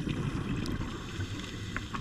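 Scuba regulator exhaust bubbles rumbling underwater as the diver breathes out, heard muffled through an underwater camera housing, with a few faint clicks.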